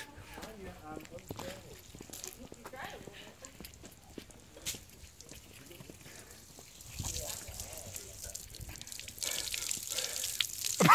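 Faint voices and a few light knocks, then near the end water pouring and splashing from a hand pitcher pump over a person's head and face.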